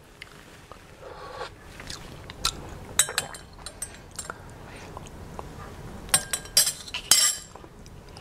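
Stainless-steel measuring spoon stirring milk tea in a small glass cup, giving scattered light clinks against the glass. A few come a couple of seconds in, and a quicker cluster comes near the end.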